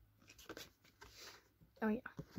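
Faint rustling and a few light ticks of items and packaging being handled and shifted about on a soft blanket, in a small room.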